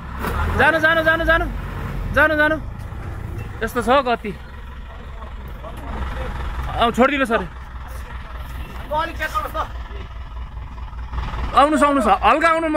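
Men shouting short chanted calls every couple of seconds, about six in all, to time their push on a stuck SML truck. Under the calls the truck's engine runs with a steady low rumble.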